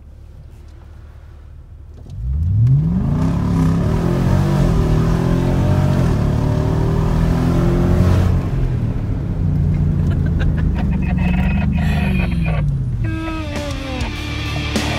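Nissan Y62 Patrol's 5.6-litre petrol V8 heard from inside the cabin: quiet for about two seconds, then revving hard under full-throttle acceleration. Its pitch climbs, drops back with each upshift and climbs again, then falls away near the end as it eases off. It is running the Unichip's 98-octane high-power map.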